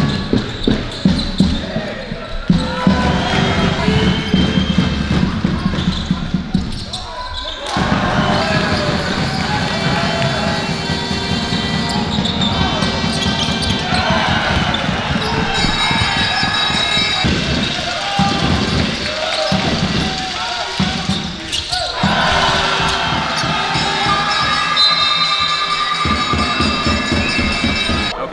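Live basketball game sound in a large gym: the ball bouncing on the hardwood court among players' and spectators' shouts and voices. The sound changes abruptly a few times as play jumps from one moment to another.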